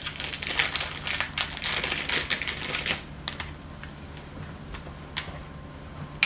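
Small clear plastic packaging bag crinkling as a part is pulled out of it: quick dense crackles for about three seconds, then a few separate clicks.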